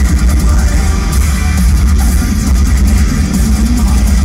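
Heavy metal band playing live in an arena, heard loud from the audience: distorted electric guitars over a heavy, booming low end, dense and without a break.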